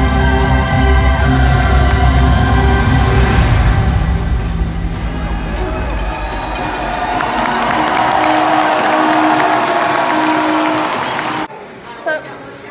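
Loud live music with strong bass filling an arena, giving way about halfway through to a crowd cheering. The sound cuts off abruptly just before the end.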